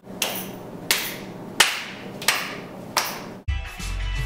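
Hand claps of the 'circle clap' dance move: five sharp claps, evenly spaced about two thirds of a second apart, each ringing briefly. Near the end, dance music with a heavy bass line comes in.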